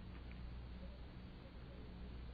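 Faint room tone: a steady low hum with a light even hiss.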